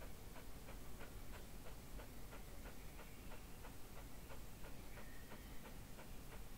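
Faint, regular ticking, about three ticks a second, with a faint thin high tone near the end.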